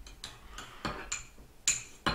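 Metal teaspoon stirring melted gummy-bear syrup in a ceramic mug, clinking against the mug's wall in a run of light, irregular taps, the loudest near the end.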